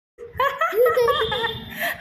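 A person laughing loudly in a high voice, starting a moment in.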